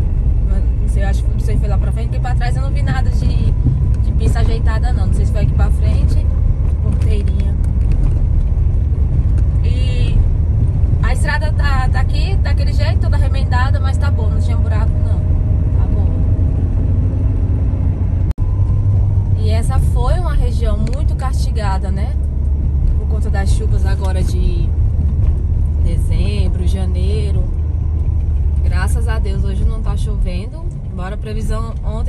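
Steady low rumble of a car driving along a road, heard from inside the cabin, with a voice over it in stretches. The sound drops out for an instant about two-thirds of the way through.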